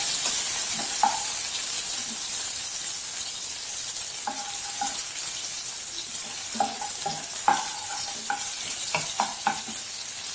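Sliced onions and seeds sizzling in hot oil in a nonstick pan, stirred with a wooden spatula. The spatula knocks against the pan in short, ringing taps, about one near the start and a cluster of them in the second half.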